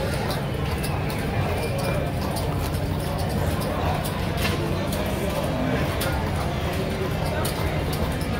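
Casino floor ambience: a steady low hum with indistinct background voices and scattered sharp clicks throughout.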